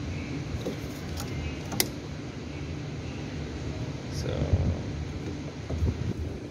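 Steady low workshop background rumble with a few light clicks, the sharpest about two seconds in, as the removed boost control solenoid's coil and housing are handled.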